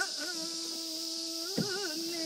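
A man singing a Japanese folk song unaccompanied in the ornamented min'yō style: one long held note, a wavering turn about one and a half seconds in, then the note held again. A short knock comes with the turn.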